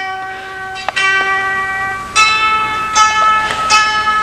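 Live instrumental music in the room: steady held chords, each lasting about a second before a new one starts, with a brief laugh at the start.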